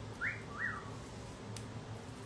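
Two short whistle-like chirps about half a second apart, each gliding up and then down in pitch, over a faint low hum.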